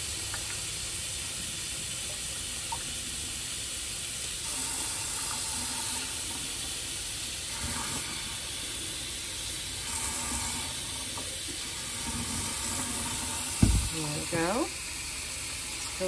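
Water from a kitchen faucet running steadily into the clear plastic clean-water tank of a Bissell CrossWave as the tank fills. A single sharp knock comes near the end.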